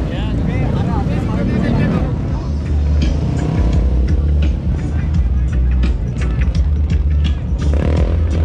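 Music with a heavy, steady bass beat and sharp percussive clicks, laid over vehicle engine noise. The beat comes in strongly a couple of seconds in.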